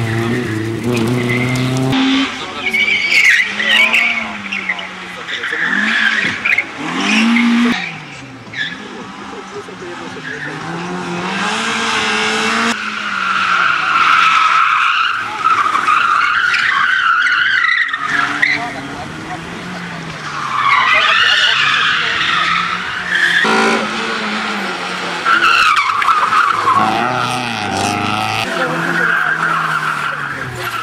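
Rally cars driven hard one after another around a tight tarmac course: engines revving up and falling back again and again as they change gear and brake, with tyres squealing as the cars slide through the turns.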